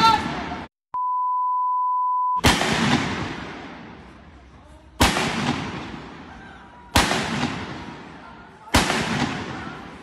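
Four pump-action shotgun blasts about two seconds apart, each followed by a long echo that dies away slowly. Before them come a brief shout and a steady one-tone censor bleep lasting over a second.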